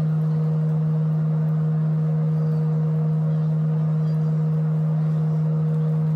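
A steady low drone: one held tone with a fainter tone above it, unchanging throughout, like a sustained note in background music.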